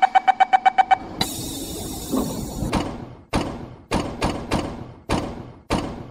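Show soundtrack over a hall sound system. It opens with a train's door-closing warning, rapid high beeps about eight a second for the first second, followed by a rushing hiss. From about three seconds in comes a run of sharp, heavy percussion hits at uneven spacing, each dying away.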